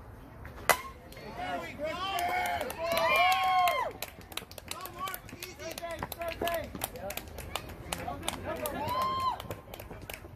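A softball bat hits a pitched ball once with a sharp impact less than a second in. Players then shout loudly across the field for a few seconds, with more shouting near the end.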